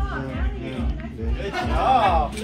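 A person talking over background music with a steady low beat, about two and a half beats a second.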